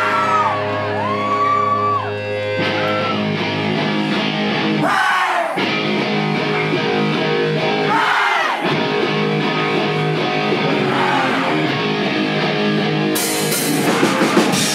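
Live rock band playing: electric guitars and bass holding chords with drums, and a singer yelling into the microphone twice, about five and eight seconds in. Cymbals wash in near the end.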